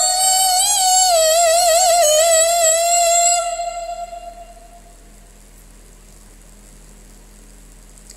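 A teenage boy's voice in melodic Quranic recitation (tilawah), holding one long high note with a fast warbling ornament about one to two seconds in, then fading out about four seconds in. After it, only a faint steady low hum.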